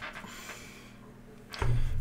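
Quiet room tone with no distinct event, then a man's voice begins about one and a half seconds in.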